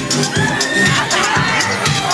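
A club crowd shouting and cheering over loud dance music with a steady beat and a low bass line.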